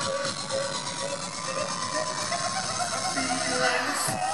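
Live pop music played over a concert PA, with a voice singing or shouting over it.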